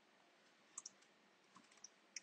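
A few faint computer clicks against near silence: a quick pair about three quarters of a second in, then two single clicks later.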